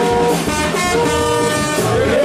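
Gagá music: held, horn-like blown notes that shift pitch a few times, over a steady drum beat.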